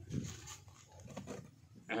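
A dog making a few short, faint sounds close by, mostly in the first second.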